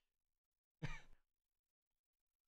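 Near silence, broken about a second in by one short voiced sigh.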